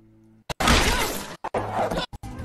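Film soundtrack from an animated movie clip: after a faint hum, a sudden loud crashing noise about half a second in that carries on, broken by brief dropouts in the stream's audio.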